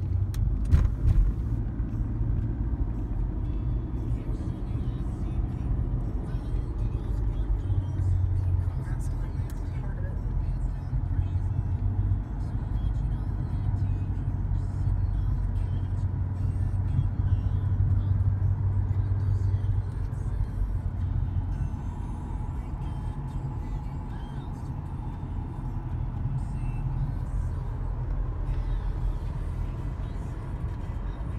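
Steady low rumble of a car's engine and tyres, heard from inside the cabin while driving. A few knocks come about a second in.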